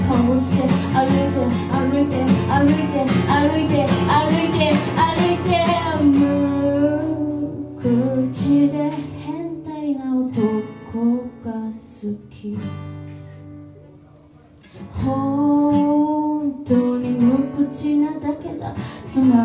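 A singer accompanying themself on a strummed acoustic guitar: busy strumming for the first six seconds, then a sparser, softer passage that dies away almost to nothing about fourteen seconds in, before voice and guitar come back with long held sung notes.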